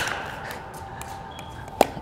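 A few faint ticks and one sharp pock near the end: a paddle hitting a pickleball, over a low steady room hum.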